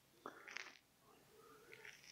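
Near silence: room tone, with one faint, short, soft sound about a quarter of a second in.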